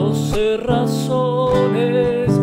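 Nylon-string criolla guitar strummed in a zamba rhythm on D7 and G chords, with a man's voice singing the refrain over it.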